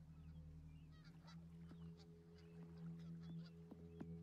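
Faint outdoor ambience: small birds chirping in short scattered calls over a low, steady drone.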